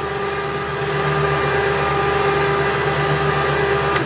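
Harbor Freight electric winch motor running steadily with a constant whine. It turns a chain-driven cross shaft that winds the trailer's jack legs out.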